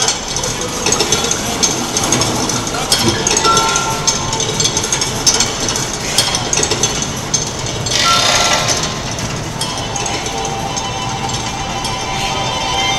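Nippon TV's giant Ghibli clock running its mechanical show: a busy clatter of clanks and knocks from its moving figures and parts, with a couple of short chiming notes from its music, one a few seconds in and another about two-thirds of the way through.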